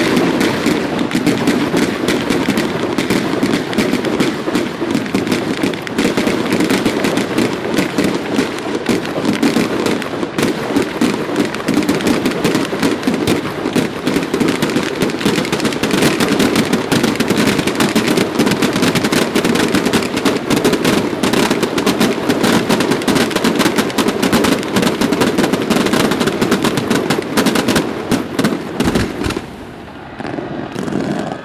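Mascoli, small black-powder mortars laid in a long chain, firing as one continuous rapid barrage of bangs that starts abruptly and stops shortly before the end.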